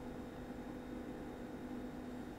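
Quiet room tone: a steady low hiss with a faint constant hum, and no distinct sound.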